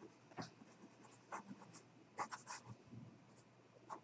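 Faint scratching of pen on paper: a few light, scattered strokes and taps of someone writing notes.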